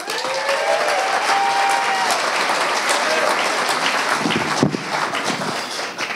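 Audience applauding, dying down over the last couple of seconds.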